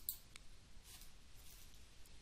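A faint computer mouse click, a second fainter click about a third of a second later, then near silence with light room hiss.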